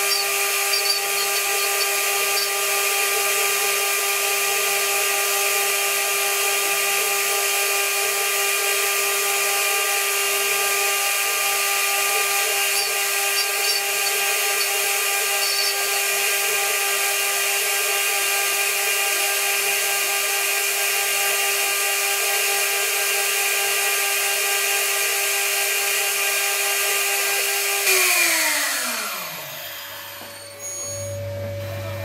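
CNC router spindle, an ELTE three-phase motor, running with a steady high-pitched whine while a small bit engraves a wooden block. About two seconds before the end the spindle is switched off and the whine falls steadily in pitch and fades as it spins down.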